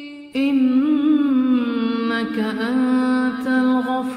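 A man's voice chanting an Arabic dua in a slow, melodic recitation style, drawing out long wavering notes. A new phrase begins about a third of a second in, after a short dip at the start.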